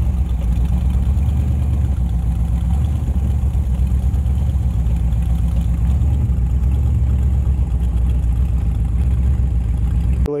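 Chevy 383 stroker V8 of a Model T bucket hot rod running through open headers while the car drives slowly, a loud, steady exhaust note with no change in revs.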